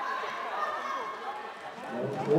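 Voices calling out across an indoor floorball court during play, with the faint sound of players running on the court floor.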